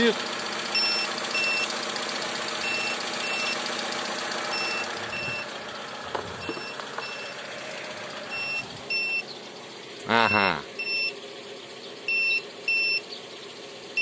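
A car jump starter clamped to the battery beeps in short double beeps about every two seconds. Under it, a 2-litre petrol engine idles steadily.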